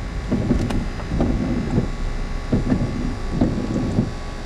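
Steady low rumble of a car running and rolling slowly, heard from inside the cabin in the rain.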